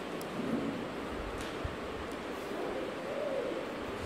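A pause in speech filled by a steady hiss of room noise, with a few faint clicks.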